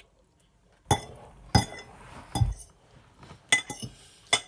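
Metal fork clinking against a dish while eating, a handful of sharp clinks with brief ringing, spaced roughly half a second to a second apart, with a quick run of clinks near the end.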